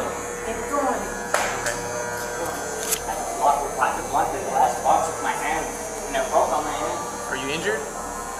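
A woman talking over a steady electrical buzz with a high whine, with two sharp clicks in the first three seconds.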